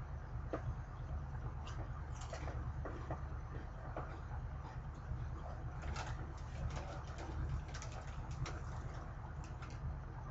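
Faint, scattered light crackles from snacks being handled, likely pieces of Flamin' Hot Cheetos being picked out of the mix, over a steady low hum.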